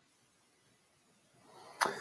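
Near silence on a voice call, then a brief sharp noise at the microphone near the end.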